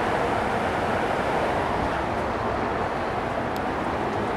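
Steady rushing of water spilling down a tiered cascade fountain.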